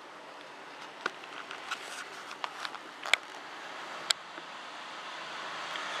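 Steady outdoor background hiss with a few scattered short, sharp clicks and taps, the clearest about three and four seconds in.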